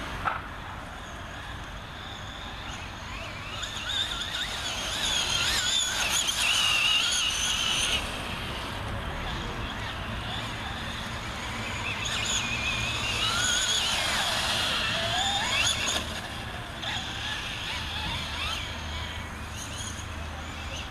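Electric motor and gearing of a Traxxas Slash 4x2 radio-controlled short-course truck whining as it speeds up and slows, the pitch rising and falling. It is loudest in two stretches, about a quarter of the way in and again just past the middle.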